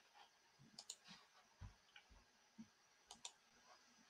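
Faint clicks of a computer mouse over near silence: a pair about a second in and another pair near the end, with a few soft low bumps between them.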